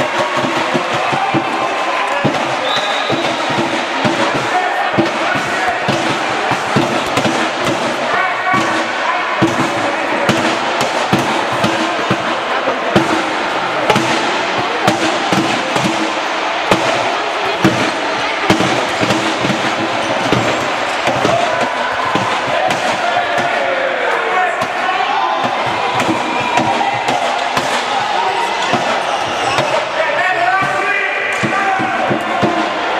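Indoor handball game play: a handball bouncing again and again on the court floor, with short knocks and thuds, under a steady bed of players' and spectators' voices.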